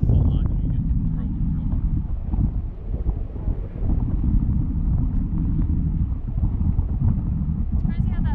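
Wind buffeting the microphone of a camera riding high on a parasail's tow bar: a loud, steady low rumble that rises and falls in gusts.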